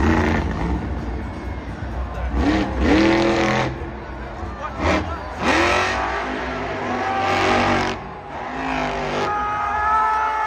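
Monster truck engine revving hard in repeated surges, its pitch climbing with each rev.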